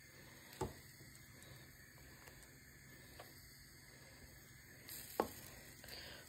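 Egg-dipped bread slices frying faintly in a non-stick pan, a low steady hiss, with two short knocks, about half a second in and about five seconds in.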